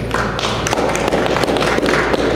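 A small group of people applauding: steady, dense hand clapping.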